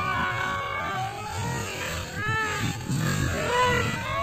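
Several people's voices calling out and exclaiming, with high calls that rise and fall, and no music.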